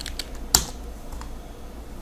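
Clicking at a computer keyboard and mouse: a few light ticks and one sharper click about half a second in.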